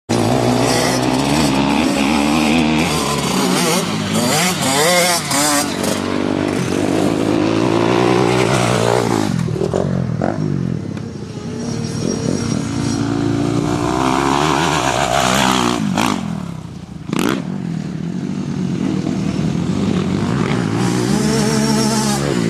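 Motocross bike engine revving hard, its pitch climbing and dropping again and again as the bike accelerates and backs off around the track. It dips briefly quieter twice, about halfway and again about three quarters of the way through.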